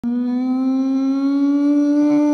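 Logo intro sound effect: a single held synthetic tone, rich in overtones, that starts abruptly and creeps slowly upward in pitch.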